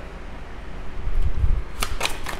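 A deck of tarot cards being handled over a wooden table: a low bump about a second in, then sharp clicks as the cards start to be shuffled near the end.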